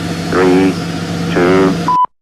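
Countdown-leader sound effect: a low steady hum with a short pitched sound once a second, twice here, ending in a brief high beep just before the sound cuts off.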